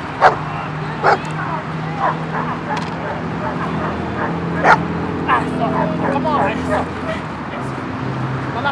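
A dog barking in sharp, repeated barks about once a second, loudest near the start and just before five seconds in, with higher yelps and whines in between. It is worked up, barking at a decoy in a padded bite suit during protection training.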